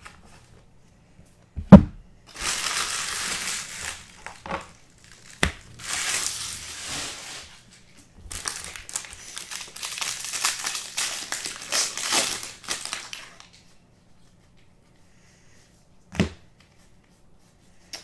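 A trading card pack's foil wrapper being torn open and crumpled by hand, in three long crinkling stretches. There is a sharp knock about two seconds in, the loudest sound, and a shorter knock near the end.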